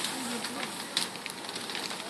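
A burning house crackling and popping over a steady hiss, with faint voices in the background.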